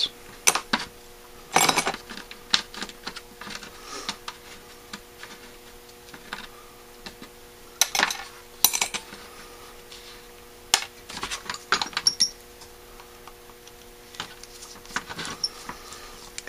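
Metal carburetor parts and screwdrivers being handled and set down on a workbench: scattered clicks, clinks and taps, a few louder than the rest, over a faint steady hum.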